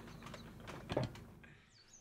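Faint, scattered small knocks and rustles of movement at a desk, with a slightly louder short sound about a second in, then it cuts to dead silence.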